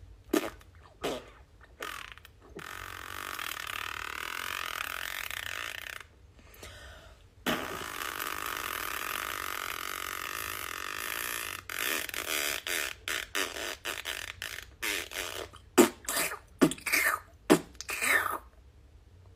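A woman making mouth noises: a few short pops, then two long stretches of air blown through pursed lips, then a quick run of short percussive mouth sounds.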